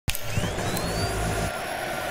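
Sound-design whoosh for an animated logo intro: a steady, jet-like rush with low held tones under it and a thin whistling tone that rises near the start.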